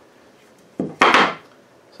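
A wooden chair rocker set down on a workbench: a light knock, then a louder wooden clatter about a second in.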